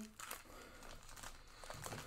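Faint crinkling of a small clear plastic parts bag as it is handled and set down on a desk.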